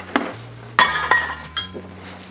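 Metal kitchen utensils clinking and rattling in a drawer as a zester is picked out. A sharp clink a little under a second in rings on briefly.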